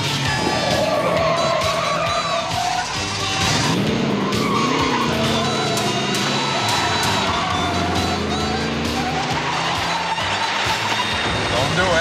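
Tyres squealing in long, wavering screeches as a 1975 Chevrolet Camaro is driven hard through sharp turns, its engine revving up and down a few seconds in. Chase music plays underneath.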